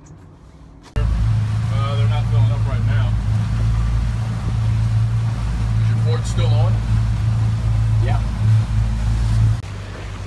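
The outboard engines of a 30-foot Cobia center-console boat running as a steady low hum. The hum starts abruptly about a second in and drops away near the end, with faint voices over it.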